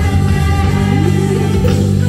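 Live band music: an electric bass plays strong low notes while a trumpet plays held notes over it.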